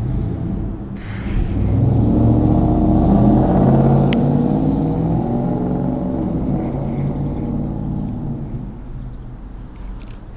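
Traffic crossing the bridge overhead, heard from underneath: a low engine and tyre rumble that builds over about a second and a half, peaks, then slowly fades away. A single sharp click sounds about four seconds in.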